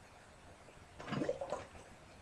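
Water sloshing briefly in a plastic basin about a second in, with a couple of short knocks, as a glass bottle heated along a burnt string line is moved under cold water and comes apart in two at that line.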